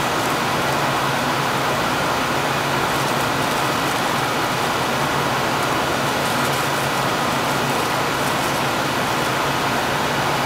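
Loud, steady, even background hiss with a faint low hum underneath, unchanging throughout, typical of machinery or ventilation noise in the room.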